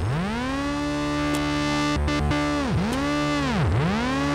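Background score: a distorted synthesizer tone that swoops down in pitch and back up, holds a steady note, then dives and rises twice more near the end.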